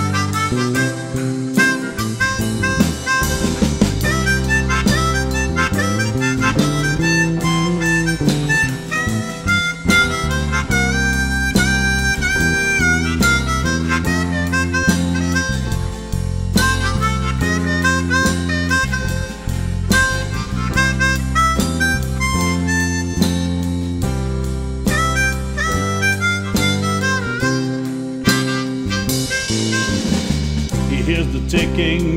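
Harmonica solo played with cupped hands, the melody bending and sliding between notes with a long held note about halfway through, over acoustic guitar and bass guitar accompaniment.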